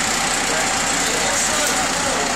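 Steady engine and road noise inside the cab of a fire rescue truck as it drives.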